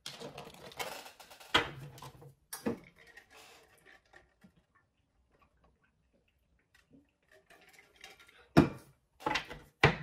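A tarot card deck being handled on a table: a run of sharp clicks and taps in the first few seconds, a quiet pause of a few seconds, then louder taps near the end.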